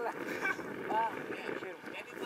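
A few short calls from people's voices over a steady rush of wind on the microphone, with the sea around.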